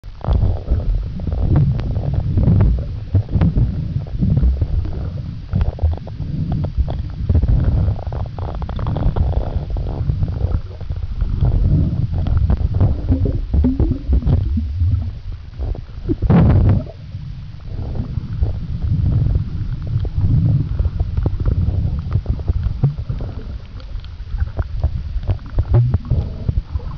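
Muffled underwater rumble and knocking from a camera being moved through the water in its waterproof housing, uneven and low-pitched, with one brief louder rush about two-thirds of the way through.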